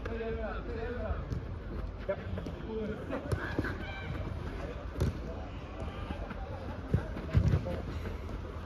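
Footballers calling out to each other on a five-a-side pitch, with a ball being kicked: sharp thuds about three seconds in, near the middle, and the loudest pair near the end.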